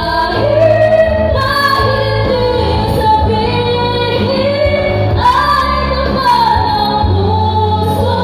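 Women singing into handheld microphones over amplified backing music with a steady bass line, heard through the PA speakers.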